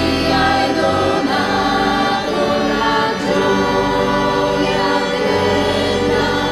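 A choir singing an Italian church hymn, with sustained sung chords that change a couple of times.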